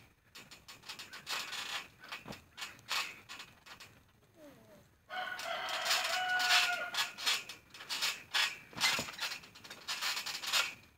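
A rooster crowing once, one call of about two seconds starting about halfway through. Scattered creaks and thumps from a trampoline's springs and mat come throughout as someone moves about on it.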